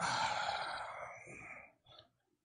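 A drawn-out vocal groan that starts suddenly and fades away over about a second and a half.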